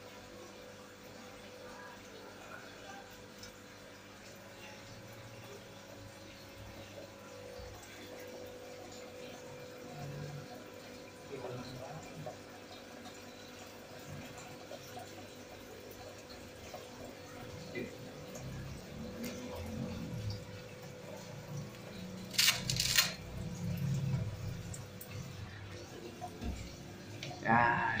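Faint steady hum with a constant tone and some water sound, typical of aquarium pump and filter equipment. Low handling and rustling noises come in during the second half, with a short sharp noise about 22 seconds in.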